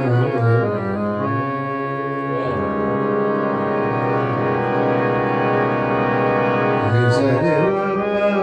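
Harmonium playing held reed notes and chords in an instrumental passage of a ghazal, the tones sustained and steady for several seconds. A man's singing voice comes back in near the end.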